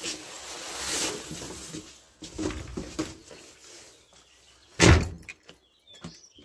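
Rustling and clicking of things being handled, then a door shutting with one loud bang about five seconds in.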